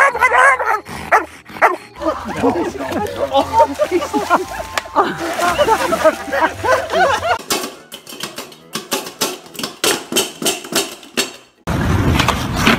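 Dogs barking and vocalizing, mixed with people's voices, the sound changing abruptly a few times as one short clip cuts to the next.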